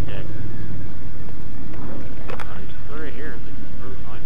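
2005 Suzuki GSX-R1000 inline-four with a full Yoshimura exhaust running at low speed, a steady low rumble, with a faint voice over the helmet intercom about three seconds in.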